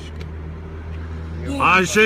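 Car engine idling with a steady low hum, and about one and a half seconds in a man's voice breaks in loudly with rising and falling cries.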